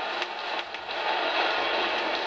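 Rugby crowd cheering and roaring after a try, heard from an old LP recording played back through a speaker, with a few clicks of record surface noise.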